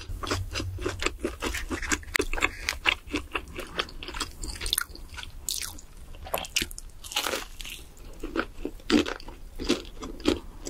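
Close-miked chewing and biting of crispy fried chicken: a dense, irregular run of crunches, with a louder crunch a little before the end.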